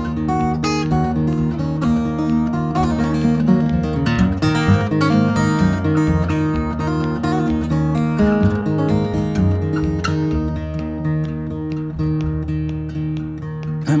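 Solo acoustic guitar playing an instrumental passage between sung verses: a run of plucked notes over ringing bass notes.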